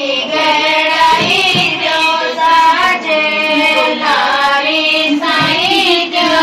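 A high female voice singing a Gangaur folk song in long, held, wavering notes.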